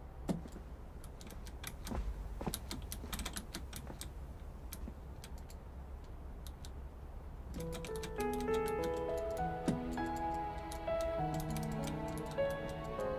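Computer keyboard keys clicking in quick, irregular runs as a game is played. About seven and a half seconds in, background music with held notes comes in under the clicking.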